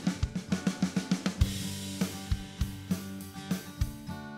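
GarageBand Drummer virtual rock drum kit playing a loop of kick, snare and hi-hat with a cymbal crash, at several strikes a second over sustained backing notes. A newly chosen kick-and-snare pattern is being auditioned for the section.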